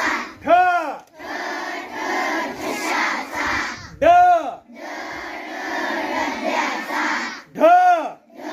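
A large group of children chanting Marathi letters aloud in unison. Three times, about every three and a half seconds, a short loud call rises and falls in pitch over the chanting.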